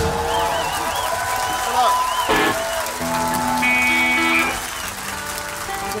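Live rock band finishing a song, with electric guitar tones held and wavering as they ring out, under crowd applause and cheering.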